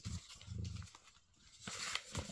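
Faint handling sounds. A short low sound comes about half a second in, then paper and packaging rustle near the end as a recipe leaflet is set aside and the box is handled.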